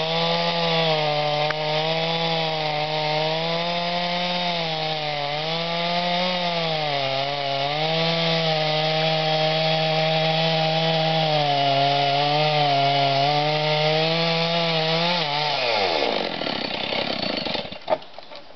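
Two-stroke chainsaw cutting into the base of a large tree trunk at full throttle, its pitch dipping and recovering under the load of the cut. About fifteen seconds in the throttle is released and the engine winds down, falling steeply in pitch, and a sharp knock comes near the end.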